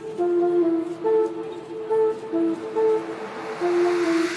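Background music: a repeating melody of short held notes, with a rising sweep starting to build near the end.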